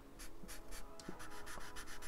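A black felt-tip marker drawing quick short strokes on paper, faint.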